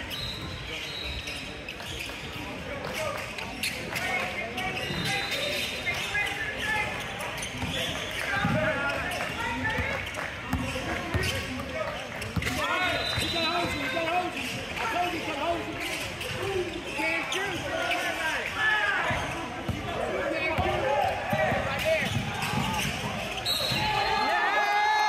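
A basketball dribbled on a hardwood gym floor during play, with voices calling out over it in a large gym.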